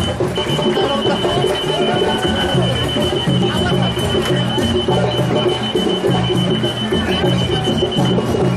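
A steady, high-pitched electronic tone, broken by short gaps, sounds over bass-heavy music with a repeating pattern of low notes.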